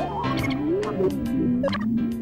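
Cartoon sound effect of a children's TV channel ident: a squeaky, warbling tone that slides up, wobbles up and down and settles lower, over a short musical jingle.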